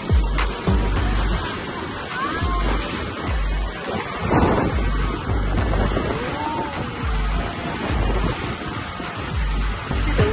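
Music with a steady bass beat over the rushing of water and wind from a motorboat moving through choppy sea.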